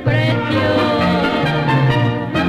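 Instrumental passage of a ranchera song with mariachi accompaniment: violins and trumpets playing a melody over a steady bass line, with no singing.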